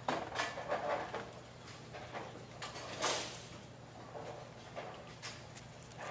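Bowling centre ambience with crowd murmur and scattered knocks, and one sharp clatter about three seconds in.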